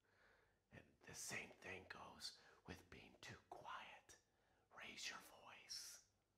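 A man whispering a few quiet, breathy phrases, starting about a second in.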